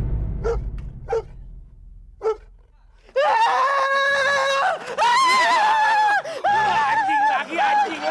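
A man screaming in long, high-pitched, wavering shrieks that start about three seconds in. Before them, low dramatic music fades out under a few short, sharp sounds.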